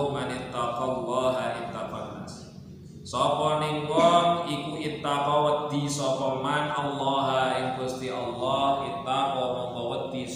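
A man's voice reading Arabic text aloud in a drawn-out, chant-like recitation, with a short pause about two and a half seconds in.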